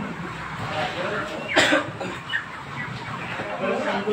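Men's voices talking over broiler chickens clucking, with one sharp, loud noise about one and a half seconds in.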